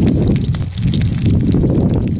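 Wind buffeting the microphone: an irregular, gusting low rumble, with faint scattered ticks from the wood stove's fire and the fish cooking in the pan.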